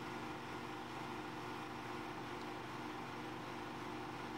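Steady low room hum with a faint even hiss, unchanging throughout.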